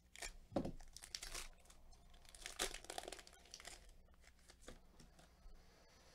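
A Panini Mosaic basketball card pack wrapper being torn open and crinkled by hand. There are two main bursts in the first four seconds, then lighter rustling.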